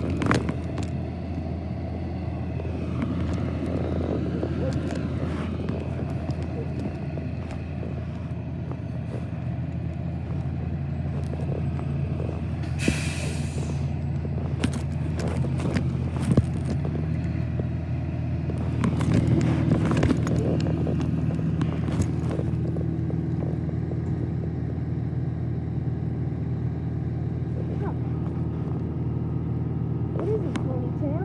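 A vehicle engine running steadily, its pitch shifting slightly now and then, with a hiss of about a second about halfway through. Scattered clicks and rubbing come from the covered microphone.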